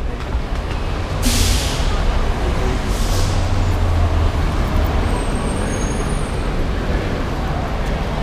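Handling noise and rumble on a handheld camera's microphone while walking through a busy airport terminal, with a short hiss about a second in and a weaker one about three seconds in.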